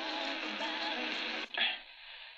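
Music from an AM station playing through the Tiemahun FS-086 portable emergency radio's small speaker, thin and narrow-sounding. It drops away about one and a half seconds in, leaving only a short burst and a fainter sound.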